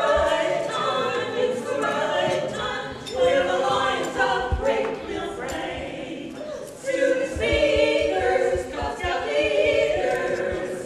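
Women's barbershop quartet singing a cappella, four voices in harmony with no accompaniment.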